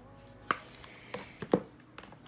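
Makeup palettes being handled in an aluminium train case: a sharp click about half a second in, a couple of lighter knocks, then a second sharp click about a second and a half in.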